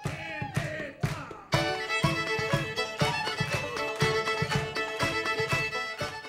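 Live folk band playing: fiddles carrying the tune over a banjo's even rhythmic strokes, the full band coming in about a second and a half in.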